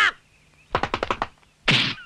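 Anime sound effects: a quick run of about six sharp clicks about three-quarters of a second in, then a short whooshing burst near the end, as the character snaps through his poses.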